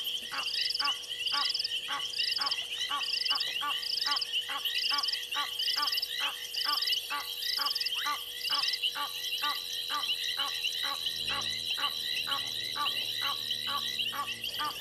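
Night chorus of frogs at a waterhole: rhythmic calls repeating about three times a second over a steady high chirring, with a higher pulsed call about twice a second that gives way, about two-thirds of the way in, to a thin steady high whistle.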